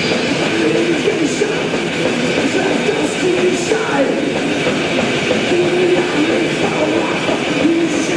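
A metal band playing live at full volume: heavily distorted electric guitars with bass and drums in one continuous, dense wall of sound.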